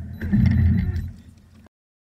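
Low rumble of a car driving on a test track. It swells for about a second, then fades and cuts off abruptly.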